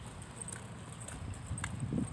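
Footsteps on a concrete path, a few light scuffs and ticks, with a low rumble swelling near the end.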